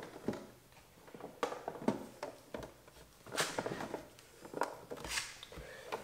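Plastic clicks and knocks as a car side mirror's cap is pressed and snapped onto the mirror housing: a handful of short sharp sounds spread out, the loudest about three and a half and five seconds in.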